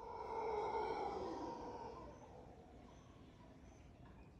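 Mantled howler monkey roaring: one long call that swells over the first second and fades out about two and a half seconds in.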